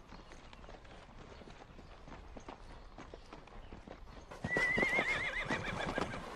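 Horses' hooves clip-clopping, faint at first and louder from about four seconds in. At that point a horse whinnies once, a wavering high call lasting about a second.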